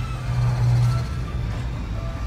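Film sound effect of the Razor Crest spaceship's engines: a loud, low, steady drone with a rushing wash above it, swelling to its loudest about half a second in.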